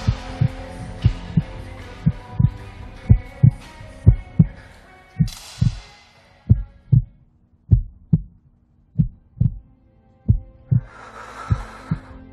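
Heartbeat sound effect: paired low lub-dub thumps about once a second, slowing slightly, over soft sustained music with whoosh swells. In the middle the music drops away, leaving only the heartbeat, before a swell rises near the end.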